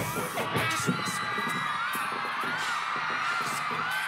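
Concert crowd cheering and screaming, with high wavering shrieks, while the backing beat drops out.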